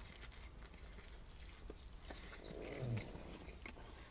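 Quiet close-up chewing of a mouthful of chicken salad wrap, with faint soft mouth clicks and a brief low hum near three seconds in.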